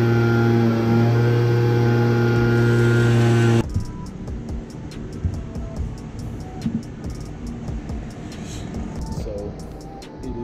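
Two-stroke leaf blower engine running at high speed, a steady loud hum that cuts off suddenly about three and a half seconds in. After it comes quieter room noise with a few faint clicks.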